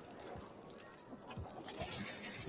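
Quiet, tense sound from a TV drama's soundtrack, then a loud clattering starts near the end as goods on supermarket shelves are knocked about.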